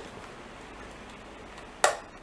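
Electric room fan running as a steady hiss, with one sharp knock near the end as the fan is moved.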